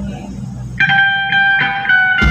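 A live band's electric guitar plays a short run of bright, clear notes starting about a second in, over a low held bass note that fades away.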